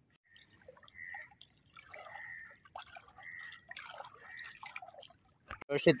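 Water trickling and dripping in a few short, faint splashes, roughly one a second.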